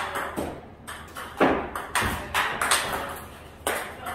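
Table tennis ball struck with backhand loop and topspin strokes in a practice drill: sharp clicks of the celluloid-type ball on the paddle rubber and bounces on the table, several each second in an uneven rally rhythm.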